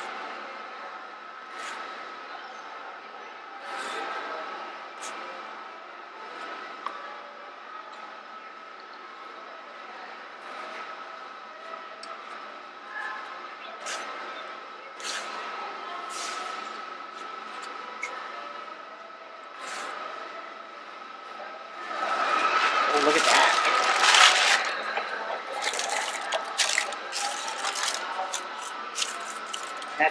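Plastic bench scrapers scraping and tapping on a marble slab as a thick peanut butter filling is worked, in short scattered clicks and scrapes over a steady faint high tone. A louder stretch of clatter comes about three quarters of the way through.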